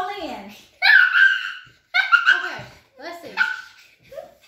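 A young child's high-pitched, wordless vocal sounds and giggles in about four short bursts, the pitch gliding up and down.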